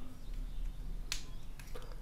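One sharp plastic click about a second in, followed by a couple of fainter clicks, as the plastic clip-on lens mount is handled.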